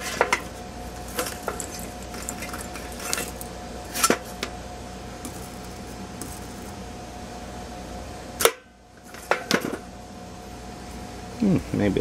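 Wire brushes clinking and knocking as they are picked through in a steel tool box and tried against the valve seats of a cast-iron cylinder head. The clicks come scattered, every second or so, over a steady background hum.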